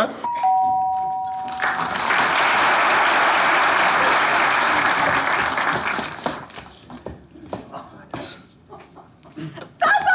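A two-note ding-dong doorbell chime, a higher note followed by a lower one, right at the start. It is followed by studio audience applause for about four seconds, which dies away into quiet stage noise.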